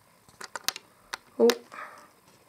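A few small, sharp clicks in quick succession as a fingertip taps and presses the plastic sprung buffers and coupling hook of a Bachmann 45xx model steam locomotive.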